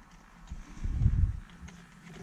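Dull low knocks and rubbing from a plastic centre console trim panel being handled and worked down over the shift boot, clustered between about half a second and just over a second in.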